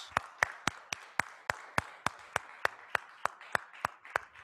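One person clapping his hands at an even pace, about three to four sharp claps a second, over softer applause from a roomful of people.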